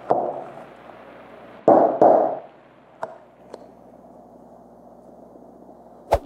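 Handling noise from a pattern template and leather pieces being shifted on a cutting board: a short swish at the start and a louder sliding rustle about two seconds in, then two light clicks.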